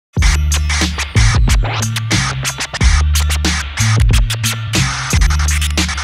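A DJ scratching a record on a turntable, quick back-and-forth scratches cutting in and out over a beat with deep, sustained bass notes.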